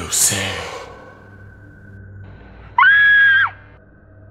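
A woman screaming: a short harsh scream right at the start, then about three seconds in a loud, shrill high-pitched shriek, held for under a second, that bends down in pitch and cuts off.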